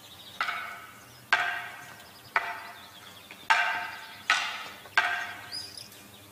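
Wooden practice swords striking each other in sparring: about six sharp clacks roughly a second apart, each ringing briefly.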